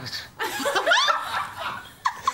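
Human laughter, rising in a few bursts and loudest about half a second to a second and a half in.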